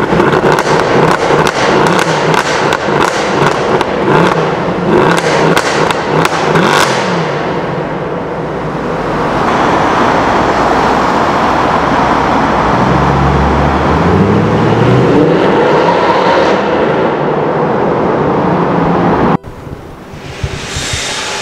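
Mercedes C63 AMG's 6.2-litre V8 revved repeatedly in a tunnel, with sharp exhaust crackles and pops through the first several seconds. It then pulls away and accelerates, its pitch climbing from about thirteen seconds in, and the sound cuts off abruptly near the end.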